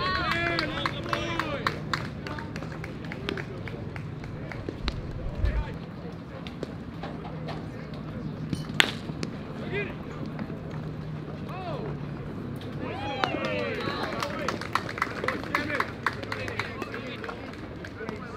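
Baseball game sound: players and dugouts calling and shouting over a steady outdoor background, with one sharp crack of an aluminium bat hitting the ball about nine seconds in.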